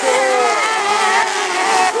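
Several race buggies' high-revving engines running together, their pitch gliding down and up as they take a dirt corner.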